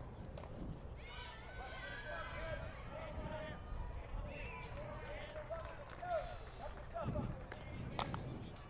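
Distant high-pitched girls' voices of softball players, calling out and cheering across the field, with a dull thump near the end.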